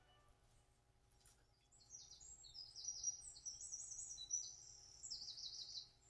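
A small bird chirping in a fast run of high notes, ending in a quick repeated trill, faint against quiet room tone.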